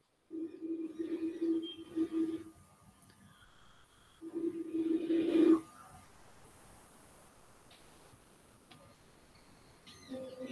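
Air blown across the mouth of a partly water-filled bottle, sounding a whistling note of about 326 Hz twice: a wavering blow of about two seconds, then a louder one of about a second and a half.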